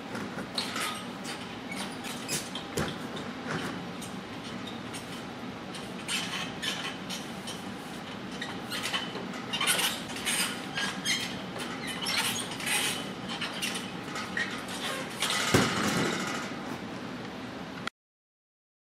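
Gymnastics bar squeaking and creaking over and over as a gymnast swings on it, with a heavy thud about fifteen seconds in. The sound cuts off abruptly just before the end.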